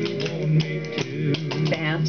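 Clogging shoes' metal taps striking a wooden floor in a quick, uneven run of clicks as the dancer does two clog basic steps, over a string-band tune with guitar.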